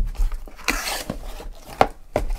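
Cardboard shipping case being opened by hand: its flaps folded back with a scraping rustle, and a few sharp knocks of cardboard and the boxes inside.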